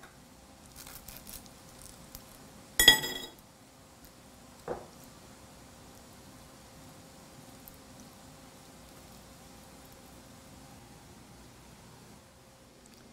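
A metal spoon clinks once against a glass bowl with a short ring, about three seconds in, followed a couple of seconds later by a duller knock; otherwise faint room tone with light handling sounds.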